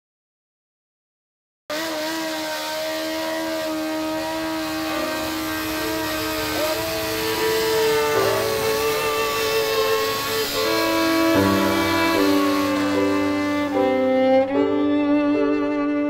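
Silent for about the first two seconds, then a slow bowed-string intro: violin and cello play long held notes that move in steps from chord to chord. Deeper bass notes join about eleven seconds in.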